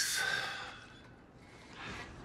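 A man's breathy sigh: a long exhale that fades out over about the first second, followed by a fainter breath near the end.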